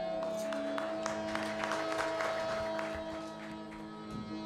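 Bhajan accompaniment between sung lines: a steady, held harmonium-like drone with scattered light percussive taps that fade out near the end.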